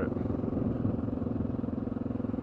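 Honda XR650L's single-cylinder four-stroke engine running steadily while the bike is ridden, its exhaust pulsing evenly under a haze of wind noise.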